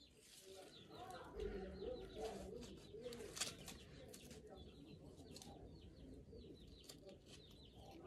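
Faint rustling and light clicks as nettle leaves are pulled from their stems with bamboo tongs over a metal bowl. A low, wavering cooing like a dove's sounds from about a second in to about three and a half seconds.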